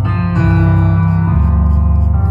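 Instrumental passage of a slow live ballad: piano playing sustained chords that change about a third of a second in and again just past the middle, with no singing.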